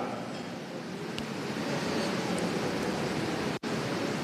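Steady, even background hiss with no voice, broken by a very brief dropout near the end.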